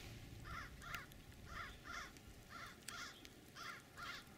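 A bird calling: short calls in pairs, about one pair each second.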